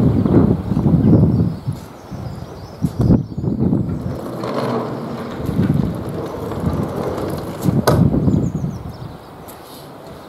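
A large sliding workshop door is rolled shut along its track. There is a rolling rumble with a sharp knock about three seconds in, and another about eight seconds in as the door closes.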